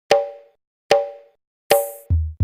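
Three identical electronic pitched percussion hits, evenly spaced about 0.8 s apart, each ringing out briefly. The third has a hiss on top.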